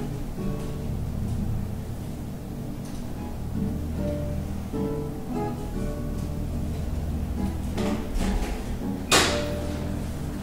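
Acoustic guitar played with a flatpick, single notes and chords ringing out one after another. Near the end a sharp knock cuts in, louder than the playing.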